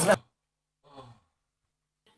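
A man's shouted word cuts off at the start, then near silence with one brief, faint breath or voice sound about a second in.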